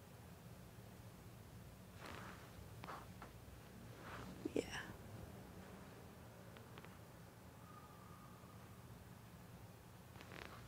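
Near silence: quiet room tone with a faint low hum, a few faint soft sounds, and a murmured "yeah" about halfway.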